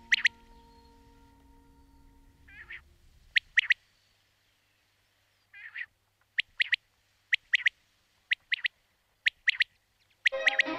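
Bird chirping: short, high chirps, mostly in pairs, repeating about once a second. The tail of a music track fades out in the first few seconds.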